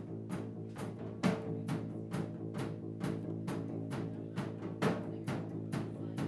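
Small live band of acoustic guitars, bass guitar and drums playing without vocals, with a steady beat of about two strokes a second over sustained guitar and bass notes.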